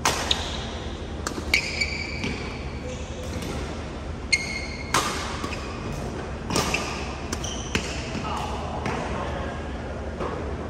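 Badminton rally in a large hall: sharp, echoing hits of rackets on the shuttlecock every second or two, with short high squeaks of court shoes on the floor.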